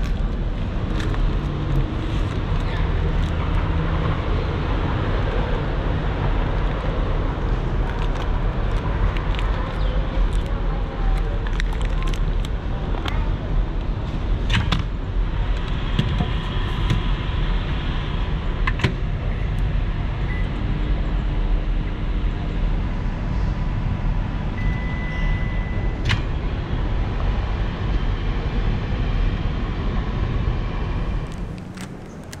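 Steady street traffic noise, with scattered clicks and knocks from a plastic meal tray and its packaging being handled. Late on there is one brief high beep.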